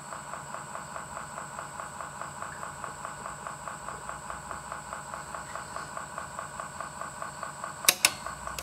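Akai CR-80T 8-track deck transport running with its cover off, a steady, evenly pulsing mechanical whir from the capstan motor and tape drive. Right at the end comes a single sharp click: the track-change mechanism trying to switch tracks on its own.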